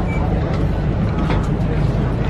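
Steady low rumble of a high-speed passenger ferry's engines running while it is moored for boarding, with people's voices over it.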